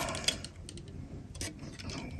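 A few light clicks and taps of glossy plastic action-figure armour parts being handled and pressed together while fitting the back buckle of the wings, which sits loose and does not click fully into place.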